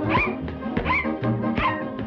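Cartoon puppy yelping three times, short high yips that rise and fall in pitch, over a brisk orchestral score.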